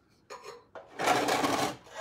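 A paintbrush loaded with polyurethane swept across the rusty metal of an old milk can: one brushing stroke lasting under a second about halfway through, with fainter rubbing just before it.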